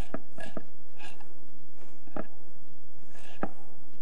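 Kitchen knife chopping fresh parsley and basil on a wooden chopping board: a handful of short, irregularly spaced knocks.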